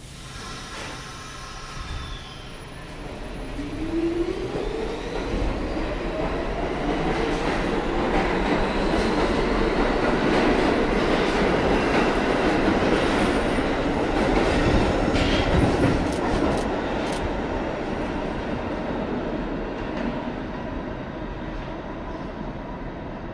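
R46 subway train pulling out of the station: its traction motors whine rising in pitch as it accelerates. This builds to a loud rumble and wheel clatter as the cars pass, then fades as the train leaves.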